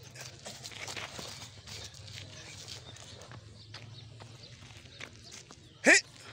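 Faint scuffing of feet on a bare dirt ground and light snaps of karate uniforms as a group practises blocks and punches, over a low steady hum. Near the end, a brief loud sound sweeps sharply upward in pitch.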